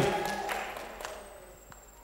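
Faint room sound in a large hall during a pause in a sermon. It fades steadily over about two seconds to near quiet, with a few faint clicks.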